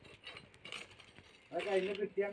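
Faint, irregular mechanical clicking, then a person's voice begins about one and a half seconds in.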